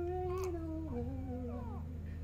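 Newborn baby crying, one long wavering cry that drops lower in pitch about a second in, over a steady low hum.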